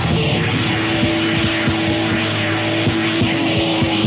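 Live rock band jam from a soundboard recording: an electric guitar holds one long sustained note from about half a second in, over a dense, droning, noisy band wash with drum hits.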